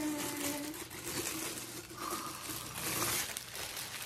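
Clear plastic bag crinkling irregularly as a glass wax warmer is pulled out of it.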